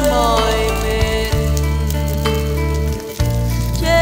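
Background music, an instrumental stretch without singing, over a steady crackling of burning dry grass and brush.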